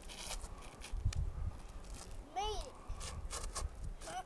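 Faint scuffs and taps of sneakers and hands on granite as a child scrambles up a rock slab, with low rumbles on the microphone. A short voiced exclamation about two and a half seconds in.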